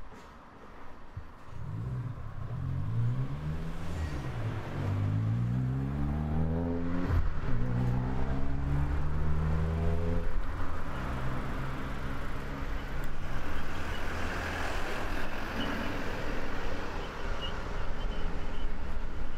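A road vehicle's engine accelerating away: its pitch rises, drops back at each gear change and rises again several times, then gives way to steadier traffic noise with tyre hiss.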